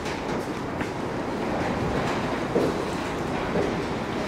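Steady rumbling noise of strong wind buffeting a steel-clad workshop building.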